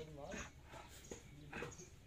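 Faint voices with a light knock of a wooden chess piece set down on a wooden board about a second in, and another soft click after it.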